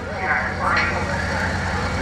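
Steady low drone of an approaching Airbus A400M Atlas's four turboprop engines, with faint voices over it.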